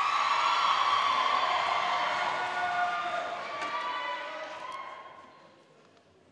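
Audience applause that swells right after a speech ends, holds for about four seconds, then fades out near the end.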